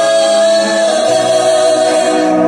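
Several singers in close vocal harmony holding a sustained chord, with little or no bass underneath.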